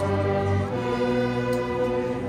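A student string orchestra of violins, violas, cellos and double bass playing slow, held chords, the harmony moving to a new chord less than a second in.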